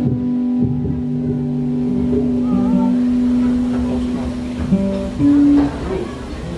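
Live instrumental music with guitar, playing long held notes as the intro to a song. The loudest note comes about five seconds in.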